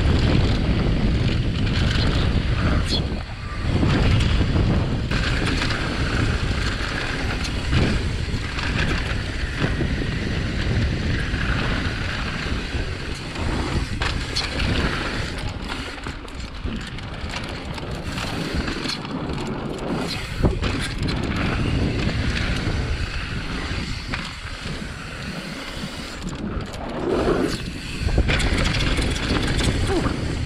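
Downhill mountain bike running fast down a dirt and gravel trail: wind rushing over the mounted camera's microphone together with tyre roar, and frequent sharp clacks and rattles from the bike over bumps.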